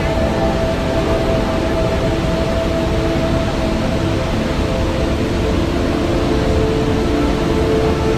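Steady rush of water from a waterfall, with music of long held tones laid over it.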